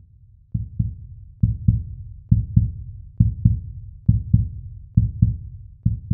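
Heartbeat sound: paired low thumps, lub-dub, repeating a little faster than once a second, starting about half a second in.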